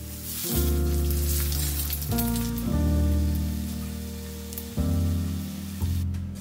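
A slice of butter-soaked French toast sizzling and crackling in a frying pan, loudest in the first couple of seconds after the slice goes back down, then easing. Background piano music plays throughout.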